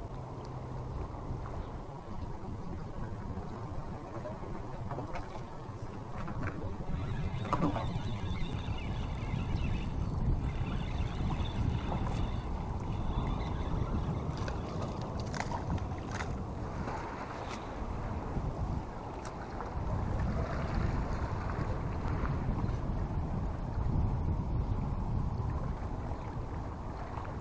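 Wind buffeting the microphone over lapping water. Partway through comes the whir and clicking of a Shimano Sienna 2500 spinning reel being wound in.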